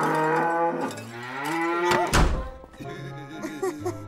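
Cows mooing in long, pitch-sliding calls for about two seconds, then a loud thump.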